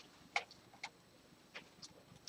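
A few faint, sharp clicks in a quiet pause: two about half a second apart in the first second, then a couple of fainter ones near the end.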